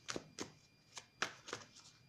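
A deck of tarot cards being shuffled in the hands: about seven short, irregular card flicks and snaps.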